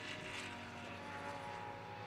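GT race car engines heard from a distance as a steady, fairly faint drone.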